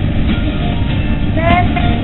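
Noise on an open telephone line: a steady low rumble and hiss from a caller's phone, with a brief faint voice about one and a half seconds in.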